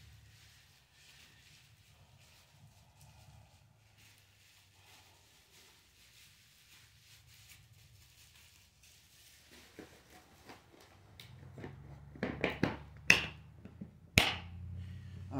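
Near silence with a faint low hum, then from about ten seconds in a run of sharp knocks and clicks close to the microphone, growing louder to a loud knock near the end: gear being handled as it is packed up.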